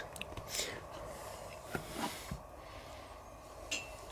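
Faint eating sounds: a few soft clicks and breathy mouth noises as a man bites into and chews a piece of grilled chicken.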